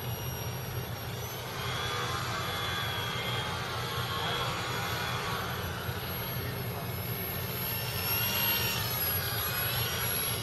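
Small electric RC model airplane (a Yak) flying, its motor and propeller whining and shifting in pitch with throttle changes, over a steady low hum.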